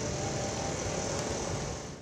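Steady hum of distant city traffic, fading out near the end.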